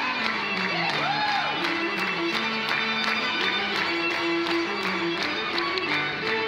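Small string ensemble of violins and cello playing a fast, rhythmic dance tune, with hand claps keeping a quick steady beat. Recorded through a mobile phone's microphone.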